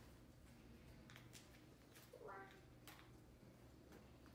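Near silence: room tone with a few faint small clicks and one brief, faint voice-like sound about two seconds in.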